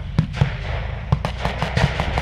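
Irregular blank gunfire, a pair of shots early on and then a quicker string of about seven in the second half, over the steady low running of armoured vehicles' engines.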